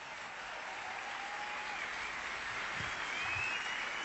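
Concert audience applauding steadily.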